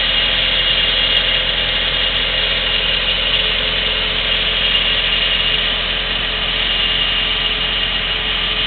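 A work-site engine idling steadily, a constant, unchanging drone.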